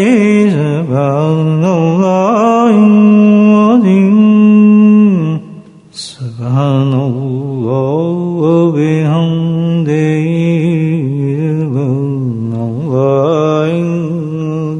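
A single voice chanting a devotional melody in long held, ornamented notes. The chanting breaks off for about a second a little past the middle, with a click, then goes on.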